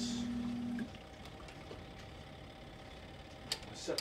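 A low steady hum that cuts off about a second in, then quiet room tone, then two sharp knocks near the end as the wooden folding drying rack is moved.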